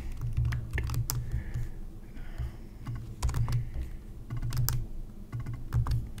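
Typing on a computer keyboard: irregular runs of key clicks as code is entered.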